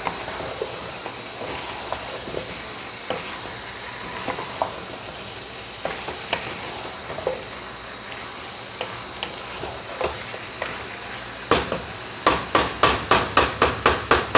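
A wooden spatula stirs chicken and potatoes in a metal pot over a steady sizzle, with scattered light scrapes and clicks. Near the end comes a quick run of sharp knocks, about three a second, as the spatula strikes the pot.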